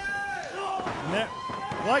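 Indistinct voices from the arena and ringside, quieter than the commentary, with a thud of a wrestler landing on the ring canvas.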